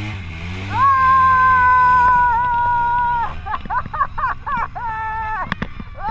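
A Polaris RZR side-by-side's engine revs up as it strains at the muddy river bank, then a long high-pitched yell, held for about two and a half seconds, drowns it out, followed by several shorter excited cries.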